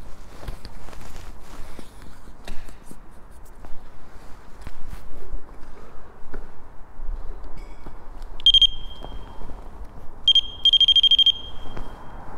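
Footsteps crunching over rubble and debris, then a single high electronic beep from a small device, another beep, and near the end a fast run of beeps, about ten a second.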